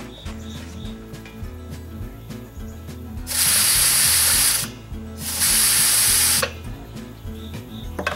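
Two blasts of compressed air hissing from an air-hose blow gun at about 30 psi into a pressure-cooker lid, a test of whether its pressure weight will lift. Each blast lasts a little over a second, with a short gap between.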